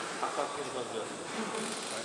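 Faint murmur of voices echoing in a large gymnasium hall, over a steady high hiss.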